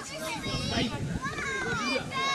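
Young children's voices calling out and chattering, high-pitched, with one long call that glides down in pitch in the second half.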